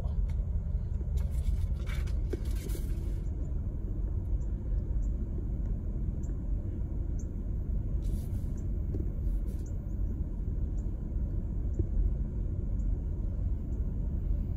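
Steady low rumble of a car driving slowly on a paved road, heard from inside the cabin, with a couple of brief hissing bursts about a second in and again near the middle.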